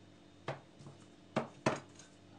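A few sharp clicks and knocks of metal as a tool and a bicycle pedal body are handled on a tabletop: one about half a second in, then two louder ones close together just past the middle.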